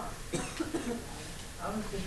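Faint, indistinct voices talking, with a short cough near the start.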